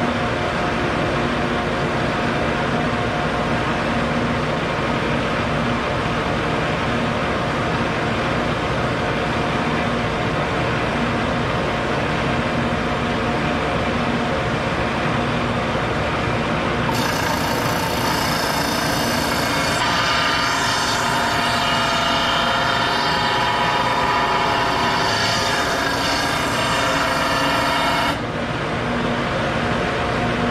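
Shopsmith Mark V 520 running steadily with its sanding disc spinning. From about 17 to 28 seconds, a louder, higher sanding sound is heard as the edge of a southern yellow pine round is turned against the disc in a light clean-up pass. It stops shortly before the end.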